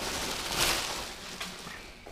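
Plastic packaging crinkling and fabric rustling as a pair of textile motorcycle pants is lifted out of its plastic wrap, loudest about half a second in and fading toward the end.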